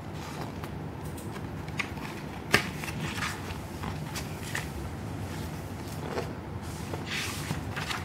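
Paperback manga volume being handled and its paper pages turned: soft rustles and small clicks, with a sharper snap about two and a half seconds in and a brief swish near the end, over a low steady background noise.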